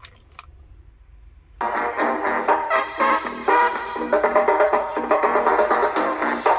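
Two short clicks as the Philips D6620 mono cassette recorder is started, then about a second and a half in, upbeat pop music with a steady beat starts playing from the cassette through the recorder's small built-in speaker.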